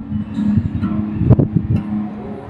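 Acoustic guitar strumming chords, an instrumental stretch with a few sharp strum strokes, the loudest a little past the middle.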